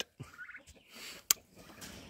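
Turkeys calling faintly, with a single sharp click a little past halfway.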